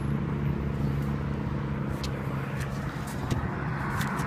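A car engine idling steadily at close range, with a few light handling knocks and rustles near the end.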